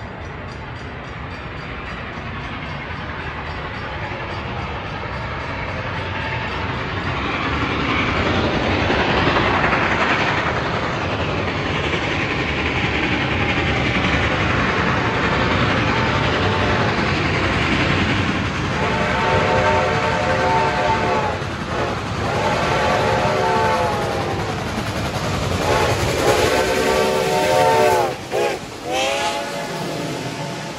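Reading & Northern 2102, a 4-8-4 steam locomotive, approaching with its running noise growing louder, then sounding four long blasts on its whistle, a chord of several tones, as it closes in and passes.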